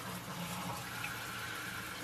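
Kitchen tap running steadily into a stainless-steel sink, washing fruit under the stream.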